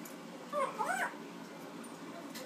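Young African grey parrot giving one short, squeaky call about half a second in, swooping up and down in pitch for about half a second.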